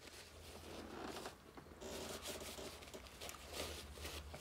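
Faint rustling and crinkling of a paper food wrapper being handled, with small ticks that come thicker from about halfway through.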